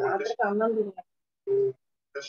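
Speech heard through an online video call, cutting to dead silence between phrases, then a short steady tone about a second and a half in.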